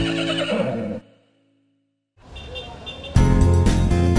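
A cartoon horse whinny at the tail of a children's song, fading out within the first second. After about a second of silence the next children's song starts softly and comes in fully about three seconds in.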